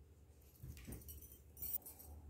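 Marker strokes on paper over a clipboard, with a brief sound rising in pitch just before a second in and a short, sharp clink near the end.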